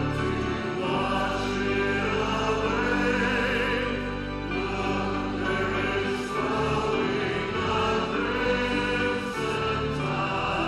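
Church worship music: many voices singing together over instrumental accompaniment, with sustained notes and a steady bass.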